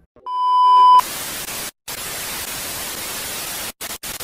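TV static sound effect for a lost signal: a steady electronic beep swells up for under a second, then cuts to loud hissing white-noise static that drops out briefly twice.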